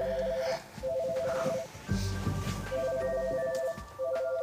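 Office desk telephone ringing with an electronic trilling two-tone ring. The bursts last about a second each and come in pairs, two close together and then a pause. Background music plays underneath.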